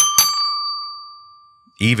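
Metal bar of a Fisher-Price alligator toy xylophone struck twice in quick succession with a plastic mallet, then one clear bell-like note ringing on and slowly fading over about a second and a half: the bar's long sustain as it keeps vibrating after the strike.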